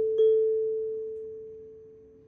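A pure bell-like chime tone, struck again about a fifth of a second in, then ringing on and fading away slowly.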